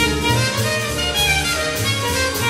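Live jazz combo playing: trumpet over double bass, piano and drum kit, with cymbal strokes about twice a second.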